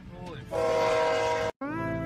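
Locomotive air horn sounding a steady chord of several tones from about half a second in. It is cut off abruptly by an edit at about a second and a half, and a fresh horn blast then rises into a steady chord.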